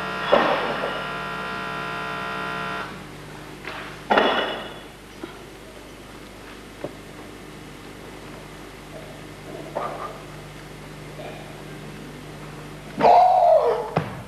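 Human voices shouting in a weightlifting hall: a long held call at the start, another short shout about four seconds in, then loud shouting near the end as the lifter cleans the barbell into a front squat.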